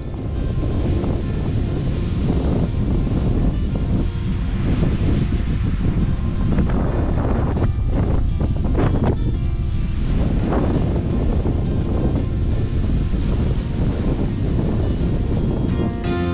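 Wind rushing and buffeting over the microphone, heavy in the low end and swelling in gusts, with music beneath it.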